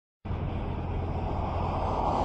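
Intro sound effect for an animated logo: a low rumbling noise that starts abruptly about a quarter second in and swells slightly.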